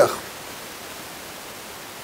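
A pause in a man's lecture: the end of a spoken word, then a steady faint hiss of room tone and microphone noise.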